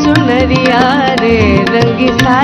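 Woman singing a semi-classical Hindustani song, her voice gliding through ornamented, wavering turns, over tabla and a steady held accompaniment.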